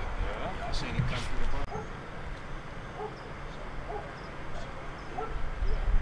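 A dog barking in short yaps, about once a second, over indistinct voices and a low background rumble.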